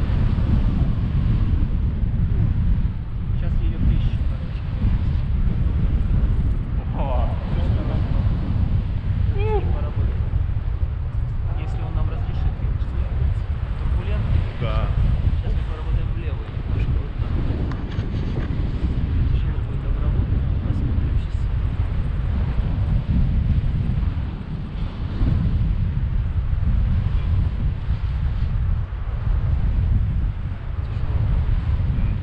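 Airflow buffeting the microphone of a camera carried in flight on a tandem paraglider: a loud, steady rumble of wind noise. A few faint, indistinct snatches of voice come through it about a third and a half of the way in.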